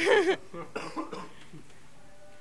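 A sudden, loud, short vocal outburst from a man, then a few short, quieter bursts of laughter trailing off.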